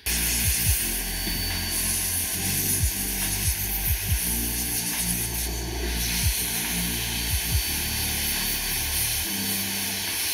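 Handheld steam cleaner blasting a jet of steam over a small SSD circuit board to drive out floodwater moisture: a steady, loud hiss that starts suddenly, with low background music underneath.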